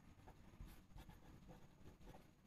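Faint scratching of a felt-tip marker writing words on paper.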